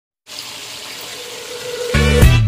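Broth at a rolling boil in a metal pot, a steady bubbling hiss.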